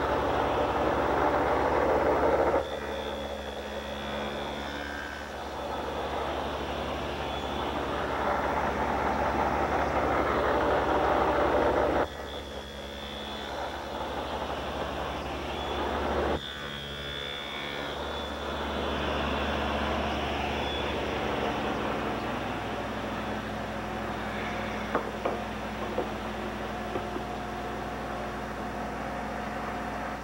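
Table saw with a two-blade adjustable dado head running and cutting box-joint slots in a board held on end against a pin jig. The cuts are loudest near the start and again from about eight to twelve seconds in, with the saw running more quietly between passes.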